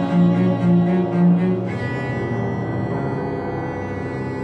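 Chamber music for violin, cello and piano: a low bowed string plays four repeated notes, then a high held note enters about halfway through.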